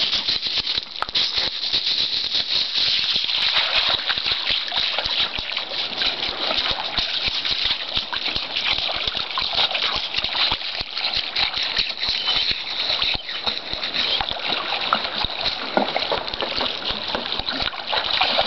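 Shallow water splashing and rushing steadily as a small dog wades through it, with a dense crackle throughout.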